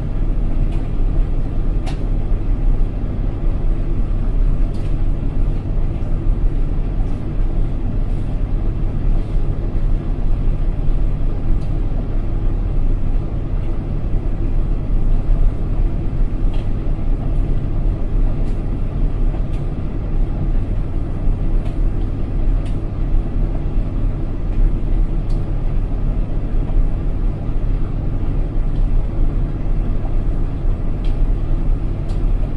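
Indesit washing machine on the spin after the first rinse: the drum turning with a steady motor hum and low rumble, and a few faint ticks now and then.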